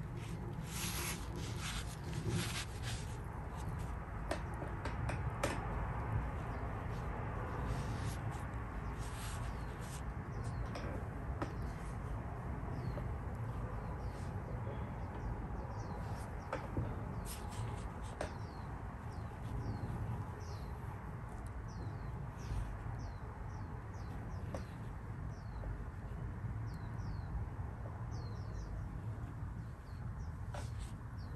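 A Chinese ink brush rubbing across semi-sized paper in short strokes while a tree trunk is painted, over a steady low room hum. Faint short high chirps repeat through the second half.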